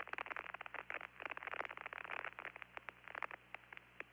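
Radio static on the air-to-ground communications loop between transmissions: dense, irregular crackling over a steady low hum.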